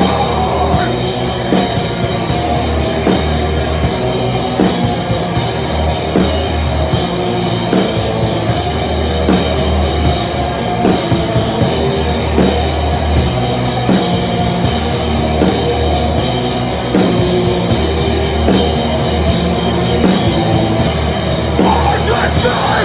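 Hardcore band playing live: distorted electric guitars, bass and a drum kit, the cymbals close and loud.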